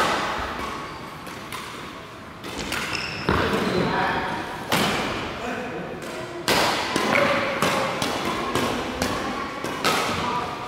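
Badminton rackets striking a shuttlecock during a rally, a series of sharp cracks at irregular spacing, some coming in quick runs, heard in a large sports hall.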